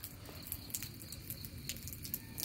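Faint, irregular drips of rainwater falling from a roof ledge and pattering onto wet ground.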